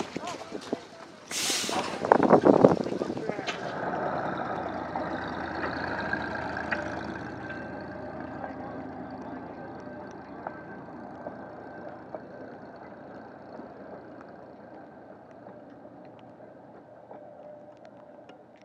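Small excursion train running on the rails and moving away, a steady rumble of engine and wheels with faint whining tones that slowly fades. A loud hiss rises briefly about a second and a half in.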